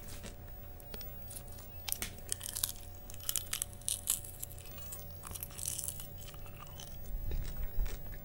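Popcorn being chewed close to the microphone: irregular crisp crunches, with a low rumble shortly before the end.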